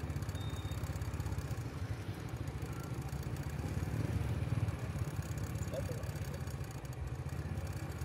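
A motorbike engine running steadily at low speed, heard as an even low rumble with a faint background hubbub over it.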